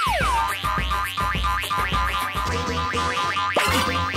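Cartoon sound effects over backing music: a quick falling whistle-like glide at the start, then a fast run of springy boings, about ten a second, for a character bouncing on a pogo stick, and a rising glide near the end.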